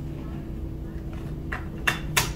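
Steady room hum, then small sharp clicks of lab glassware being handled on a bench: a faint one about one and a half seconds in and a louder one just before the end.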